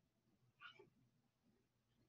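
Near silence: room tone, with one faint, brief sound about half a second in.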